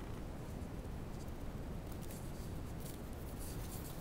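Satin crinkle ribbon rustling and crinkling faintly as fingers pleat and press it onto a card disc, over a steady low hum.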